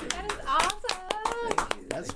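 Hand clapping in a small room, a quick irregular patter of claps, with a voice speaking over it.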